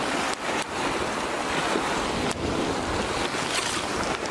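Sea waves washing and breaking on a rocky shore, a steady rushing surf, with wind blowing across the microphone.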